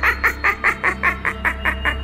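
A witch's cackling laugh in a put-on cartoon voice performed by a man: a fast, even run of about five 'heh' syllables a second that fades out just after the end.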